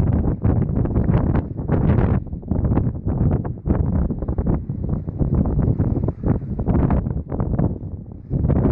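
Strong wind buffeting the microphone: a loud, uneven rumble that swells and drops in quick gusts.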